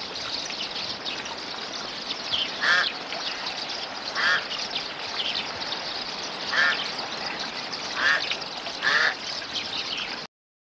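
A bird calling, five short calls spaced one to two seconds apart, over a steady background hiss.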